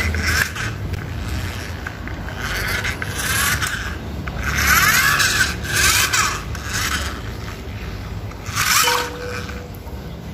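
Plastic toy cars pushed by hand across a tiled surface, with several short scraping sounds, each about half a second long, spread through the clip.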